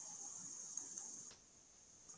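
Faint steady high-pitched hiss that cuts off suddenly about a second and a half in, leaving near silence.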